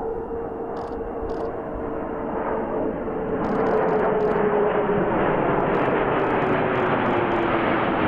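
Formation of F-15 fighter jets flying overhead: twin-engine jet noise that grows louder about three seconds in and then holds, with a steady whine that slowly drops in pitch as they pass.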